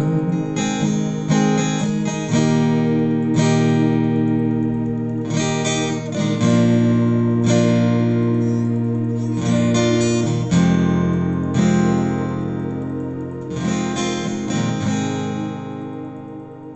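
Acoustic guitar with a capo at the first fret, strummed in a steady rhythm of chords without singing. Near the end the last chord rings and fades away.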